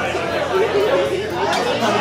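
A group of people chattering and talking over one another, several voices at once.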